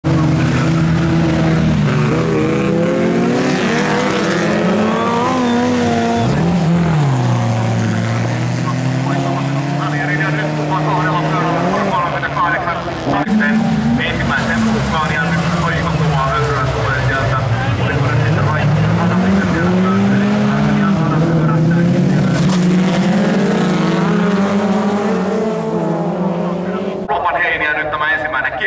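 Several jokkis folk-race cars racing on a gravel track, their engines revving up and down through the gears, the pitch repeatedly rising and falling.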